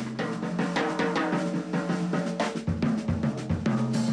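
Jazz drum kit played with sticks: a busy run of quick snare strokes, with a few bass drum kicks in the second half.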